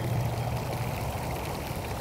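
Steady rushing of water spraying from a poolside fountain, with a low hum beneath it.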